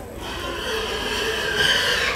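Show pig squealing: a long, high squeal that gets louder near the end.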